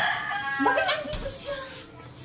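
A rooster crowing: one long drawn-out call that trails off shortly before the end.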